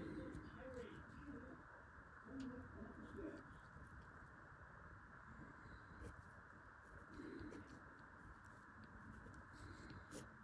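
Near silence: faint room tone with a steady hiss and a few soft, low sounds near the start, around two to three seconds in, and again past seven seconds.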